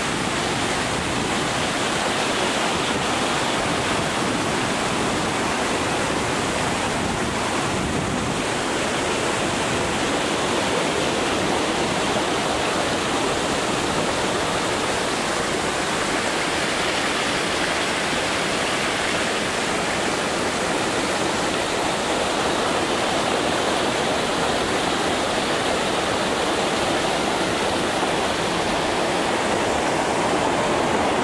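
Stream water pouring over a low concrete weir and rushing through a rocky channel below: a loud, steady rush.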